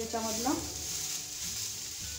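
Grated carrots sizzling in ghee in a kadhai while a wooden spatula stirs them; a steady hiss.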